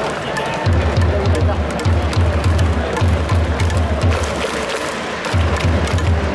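Baseball stadium cheering: music with a steady, pounding low drum beat that starts about a second in, over crowd noise.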